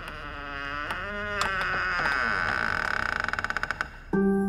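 A drawn-out, eerie voice-like wail whose pitch bends and wavers, breaking near the end into a rapid fluttering pulse of about a dozen beats a second. It is a horror-film ghostly vocal effect.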